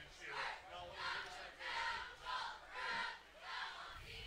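Stadium crowd voices chanting and shouting in a steady repeated rhythm, about one swell every half second.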